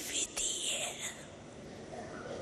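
A woman's soft, slow speech in Hindi, a few words that trail off about a second in, leaving quiet room tone.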